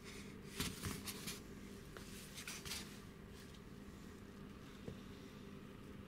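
Faint handling noises from an assembled Vespa clutch in gloved hands, with a few soft clicks in the first second or so and one faint click about five seconds in, as it is turned and set down on cardboard. Beneath them runs a steady low hum.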